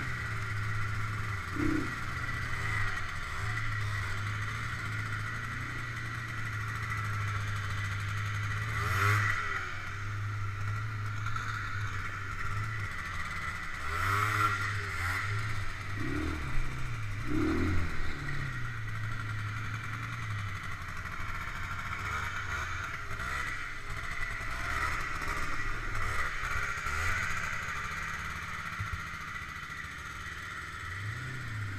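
ATV engine running steadily while riding a rough dirt trail, revving up and down a few times around the middle.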